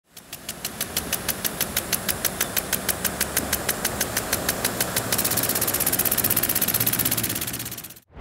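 Rhythmic mechanical clicking, about five clicks a second over a low hum and hiss; about five seconds in the clicks speed up to roughly ten a second, then the sound fades out.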